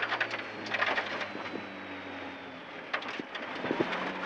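Rally car's engine running steadily, heard from inside the cabin over a constant rush of tyre and road noise, with scattered sharp clicks of stones striking the car's underside.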